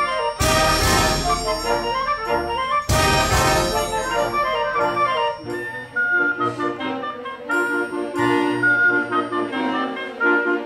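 Small orchestra of strings and winds playing classical music. Loud full-ensemble chords strike sharply about half a second and three seconds in. From about six seconds a quieter passage follows, with repeated low notes under a held higher wind line.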